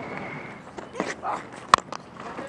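A cricket bat striking the ball once, a sharp crack with a brief ringing tone, about three-quarters of the way through.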